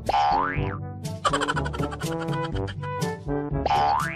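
Playful background music with a cartoon "boing" sound effect: a quick rising glide near the start, and another just at the end.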